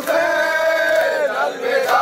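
Male voices chanting a noha, a Shia lament, in long held lines, taken up by a group of mourners in chorus. One line is held for about a second and a half, and the next starts near the end.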